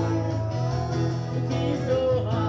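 Live acoustic guitar playing with a woman singing into a microphone, long held notes over the guitar.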